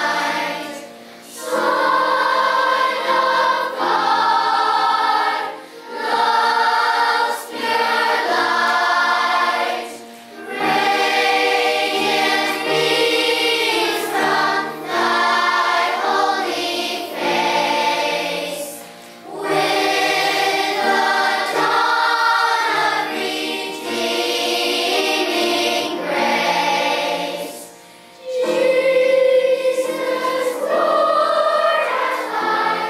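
Children's choir singing together, the held notes coming in phrases with brief pauses between them.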